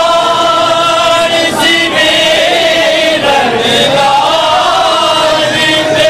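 Male voices chanting a noha, a Shia lament, in long held notes that slide between pitches.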